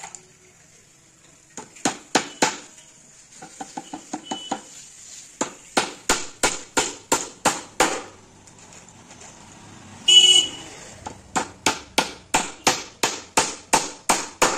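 A claw hammer driving nails into plywood: runs of sharp strikes about three a second, with a burst of lighter, quicker taps near the start. About ten seconds in, a short loud toot cuts in between the strikes.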